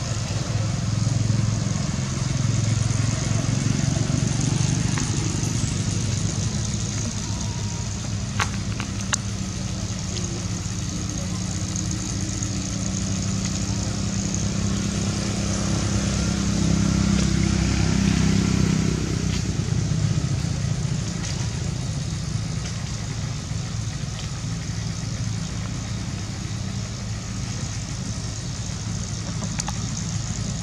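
Low hum of a motor vehicle engine running nearby, strongest through the first two-thirds and dropping away about nineteen seconds in, over a steady high hiss.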